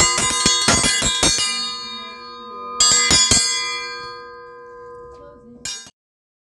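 An iron triangle dinner bell is rung by rattling a metal rod rapidly against the hanging bar, giving a fast run of clanging strikes with a long metallic ring. A second short run comes about three seconds in, and a last brief clang is cut off abruptly near the end. It is the call that breakfast is ready.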